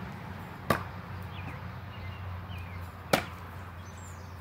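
Two Cold Steel Sure Strike heavy throwing stars sticking into a wooden log-round target, two sharp thunks about two and a half seconds apart.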